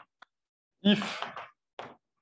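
A man's voice saying a single breathy word, "if", about a second in, between quiet pauses.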